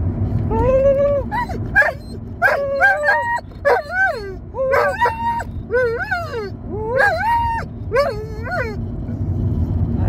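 Dog howling in a long string of short calls that rise and fall in pitch, inside a moving car's cabin with steady road rumble underneath.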